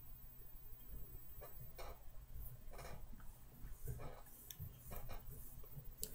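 Faint, scattered soft ticks and rustles of hands wrapping chenille forward along a hook held in a fly-tying vise.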